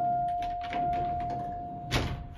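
A steady electronic beep held for about two seconds in a vintage Otis elevator car, over the rattle and clicks of the car's folding metal wraparound gate being pulled by hand, with a sharp metal clank near the end.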